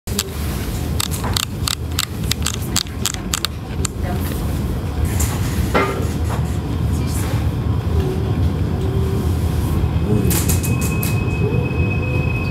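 Narrow-gauge steam train running, heard from on board: a steady rumble of wheels on the track with quick runs of clicks and knocks in the first few seconds and again near the end. A thin, steady squeal sets in near the end as the wheels grind through the curve.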